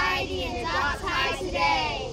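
A group of children's voices shouting a closing line together in a sing-song chorus, ending on "...Humane Society!"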